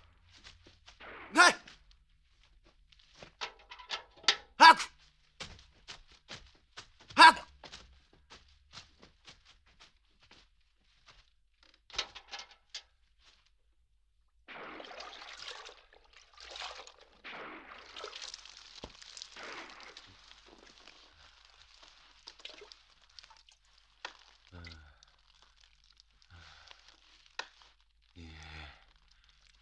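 A man's short, loud shouts, four of them in the first eight seconds, then scattered clicks and a long stretch of rustling, hissing noise in the second half.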